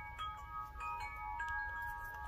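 Faint chime notes ringing and overlapping, a new note sounding every half second or so, over a low rumble.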